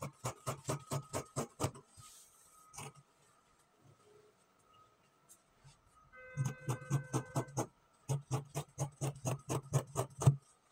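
Tailor's scissors snipping through folded fabric on a table in quick runs of short cuts, about five or six snips a second, with a pause in the middle.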